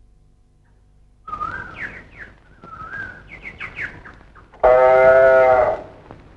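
Birds chirping with short rising and falling whistles for a few seconds. Near the end a calf moos once, loudly, for about a second.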